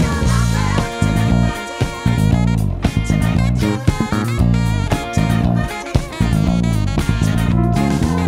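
Alusonic S-Special electric bass played fingerstyle: a funk bass line of short, punchy notes with brief gaps between them, over a backing track with drums.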